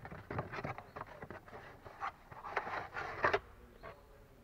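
Packaging of a new cabin air filter being handled and opened: irregular rustling and crinkling with a few sharp clicks, busiest and loudest about two and a half to three and a half seconds in.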